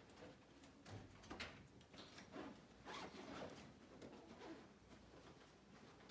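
Near silence: quiet room tone with faint, scattered rustles and small clicks.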